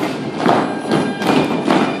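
Dancers' heeled character shoes stamping on a studio floor in time with recorded music, about two and a half stamps a second, starting with a loud stamp.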